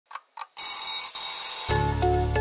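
Two clock ticks, then an alarm clock bell ringing loudly for about a second with a brief break in the middle. Music with a bass line comes in near the end as the ringing stops.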